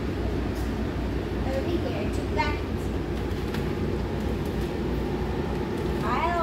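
Steady machine hum made of several low tones, with faint handling clicks of plastic vacuum bags and a brief pitched sound about two and a half seconds in.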